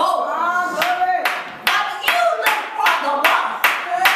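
Hand clapping in a steady rhythm, a little over two claps a second, under a voice in long held notes.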